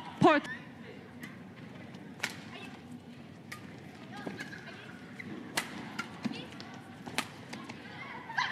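Badminton rally: sharp cracks of rackets hitting the shuttlecock, four of them a second or two apart, over low arena murmur. A short shout comes right at the start.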